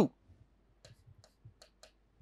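Marker tip tapping and clicking against a writing board in a handful of faint, short ticks while two strokes are written.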